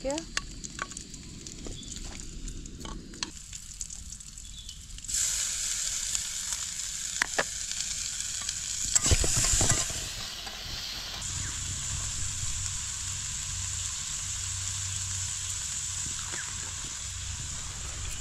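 A spoon clicking and scraping against a steel pot, then about five seconds in a sizzle starts abruptly as food hits hot oil in a kadai on a portable gas stove, with a few sharp clinks of the spatula. The sizzle eases a little about halfway through and keeps going.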